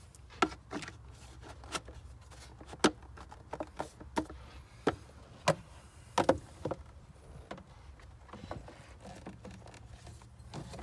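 Hard plastic intake parts, a Hellcat lower airbox and its duct inlet, clicking and knocking as they are handled, fitted together and set into the engine bay. The clicks are sharp and irregular, with the loudest about three seconds in and again about five and a half seconds in.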